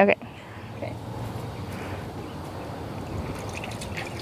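Water in a plastic stock-tank trough trickling and splashing as hands scoop through it: a low, steady water noise.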